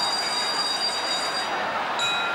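A ringside bell ringing with a high, multi-toned ring that fades away near the end, over the steady noise of a large stadium crowd.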